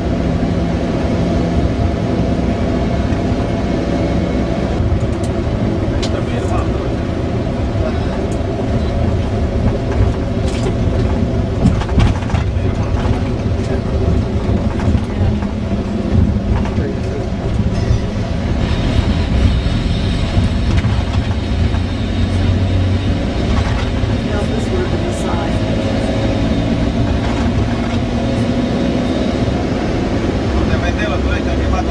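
Bus engine and road noise heard from inside the cabin while driving: a steady low drone with scattered knocks and rattles.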